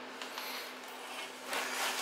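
A garage heater running with a steady hum, and toward the end a faint rustle of parts being handled.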